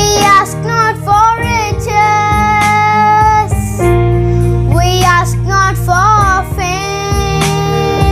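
A young girl singing a Christian prayer song solo over a steady instrumental backing track, her voice moving through short melodic turns and holding long notes.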